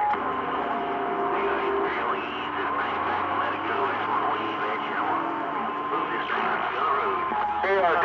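CB radio receiving a crowded channel with distant stations coming in on skip: steady static with faint, garbled speech under it and several steady whistle tones from carriers beating against each other.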